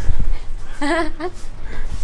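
A woman's tearful, high-pitched laughter with a wavering, trembling voice and an exclaimed "no way!", the sound of overwhelmed joy at a surprise.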